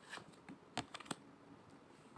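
Faint, irregular light clicks of a deck of round tarot cards being handled, with a card laid down on the wooden table.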